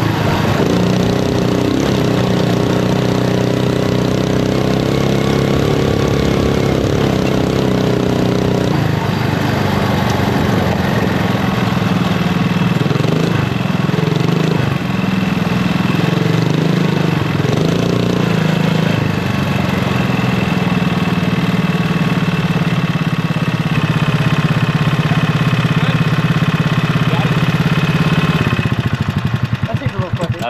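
Predator 459 single-cylinder engine driving a crosskart through a CVT, rising and falling in pitch with the throttle over a rough trail, then holding a steadier note before it stops just at the end.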